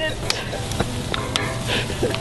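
Food sizzling in a tin can on a grill grate over a wood campfire, with scattered sharp crackles and clicks.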